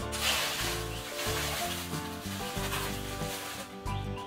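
Background music with held notes, over rough rustling and scraping of dry banana leaves and plant debris being pulled and cut, coming in a few separate bursts.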